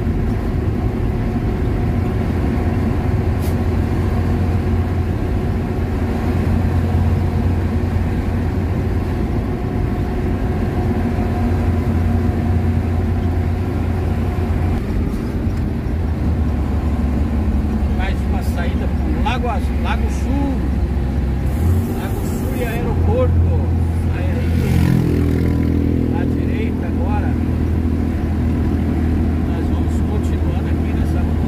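Vehicle engine and road noise heard from inside the cab while driving on a highway: a steady low drone whose note drops and rises a few times in the second half.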